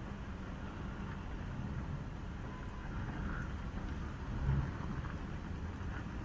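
Low, uneven rumble of wind buffeting the microphone over distant city traffic, with a stronger gust about four and a half seconds in.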